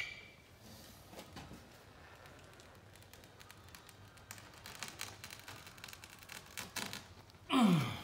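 A knife blade drawn down a metal straightedge, double-cutting through overlapped grasscloth wallpaper: faint scraping with many small clicks and a sharp click at the very start. Near the end a short, loud breathy sound falling in pitch, like a sigh.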